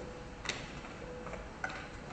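Footsteps of shoes on a wooden stage floor, heard as a few sharp clicks, the two loudest about a second apart.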